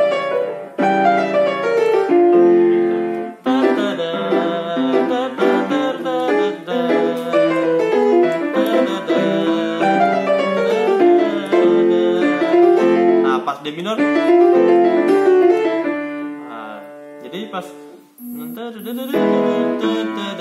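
Yamaha piano played in a jazz-gospel style: quick right-hand runs and licks over left-hand chords. The playing thins out and almost stops about eighteen seconds in, then picks up again.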